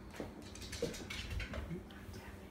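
Faint rustling of a towel being lifted off balloons as a hand reaches under it, with scattered soft handling noises and a brief murmured "mm".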